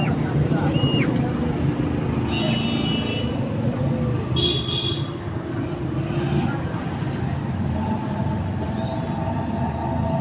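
Steady street traffic, with two short vehicle horn toots about two and a half and four and a half seconds in.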